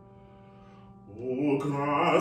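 Soft ringing piano notes in a pause, then a man's classical singing voice comes in a little after a second, sliding up into a loud held note with piano.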